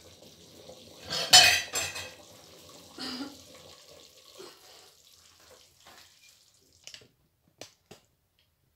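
A metal spoon scraping and clattering in an aluminium cooking pot of chicken pieces, loudest about a second in, then fading to a few faint clicks near the end.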